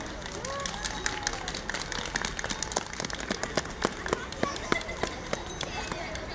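Scattered hand-clapping from a small audience, irregular claps that start about a second in and keep going, with children's voices calling out among them.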